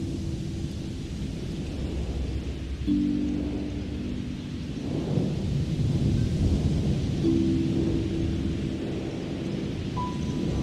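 Ambient music with a rainstorm layered in: a low rumble of thunder swells through the middle over rain hiss. A sustained low chord enters about three seconds in and again about seven seconds in.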